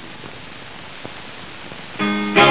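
Steady hiss and hum of the recording's background noise, with one faint click about a second in.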